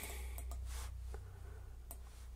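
A low, steady electrical hum with three faint, short clicks about three-quarters of a second apart.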